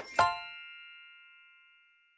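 Final note of a short outro jingle: a bright bell-like chime struck once, ringing and dying away over about a second and a half.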